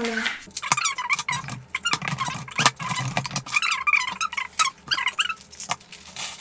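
Packaging unpacked by hand: plastic wrapping crinkling and rustling, with scattered clicks and knocks of cardboard boxes and small plastic parts.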